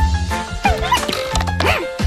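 Cartoon background music, with an animated mouse character's wordless vocal sounds gliding in pitch twice over it.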